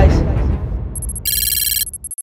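Edited-in sound effect: a low rumble dies away, then about a second in a bright, high electronic ringing tone sounds for under a second and cuts off.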